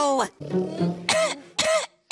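A man chuckling in short bursts, then starting to speak, over background music.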